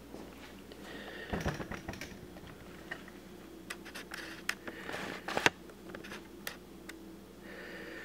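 Scattered clicks, knocks and rustling from the camera being handled. A low thud comes about a second and a half in, and the loudest thing is a sharp click about five and a half seconds in. Under it all runs a steady low hum.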